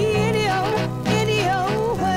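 Soul song recording: a band with a bass line under a wavering lead melody with vibrato.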